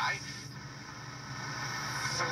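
Small speaker of an Arvin eight-transistor AM pocket radio giving hiss and static from a weak medium-wave station, with faint broadcast voice coming up through the noise from about a second in. Reception is poor.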